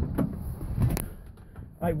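A few light clicks and knocks over a low rumble in the first second, then a brief quieter stretch before a man's voice starts at the very end.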